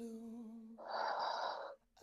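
A person's audible breath, a breathy exhale of about a second, taken while holding a three-legged downward dog with the knee bent. It ends abruptly, over a faint, steady sustained tone.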